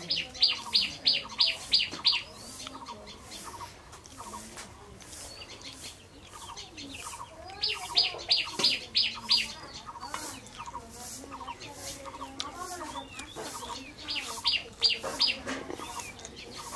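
A bird calling in three bursts of quick, high repeated notes, about four a second: near the start, in the middle and near the end. Softer short chirps carry on between the bursts.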